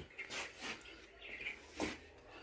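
Quiet workshop room noise with a few faint short sounds, a brief high-pitched one about halfway through, and a single sharp click near the end.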